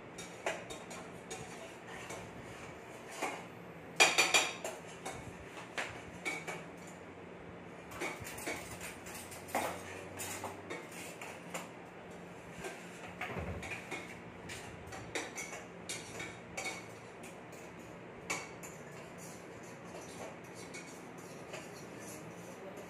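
Metal utensil clinking and scraping against a small stainless-steel pot while stirring on an induction cooktop: irregular light clinks throughout, with the loudest cluster of knocks about four seconds in.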